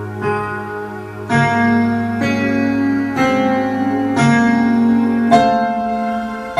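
Digital keyboard playing a grand piano sound: a slow melody of single notes, about one a second, each left to ring, over a low held bass note at the start.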